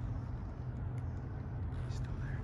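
Steady low outdoor rumble of urban background noise with no distinct event, plus a faint tick about a second in.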